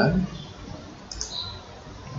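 A single computer mouse click about a second in, over faint background noise.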